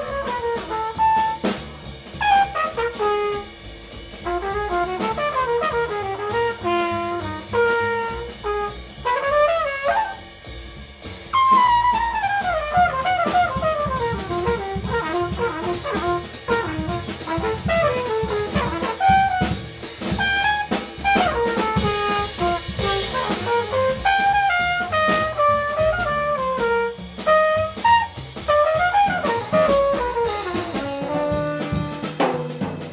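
Live small-group jazz: a trumpet improvises in fast, winding runs over double bass and a drum kit keeping time with cymbals.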